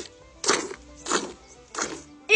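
Milk squirting from a cow's teat into a partly filled plastic bucket during hand-milking: three short squirts about two-thirds of a second apart, with faint background music.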